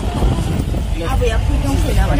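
Car cabin noise while driving: a steady low rumble of engine and road, with brief voices talking over it in the second half.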